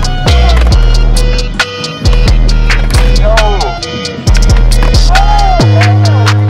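Hip-hop track with deep bass notes that slide down in pitch, fast ticking hi-hats and a rapped vocal.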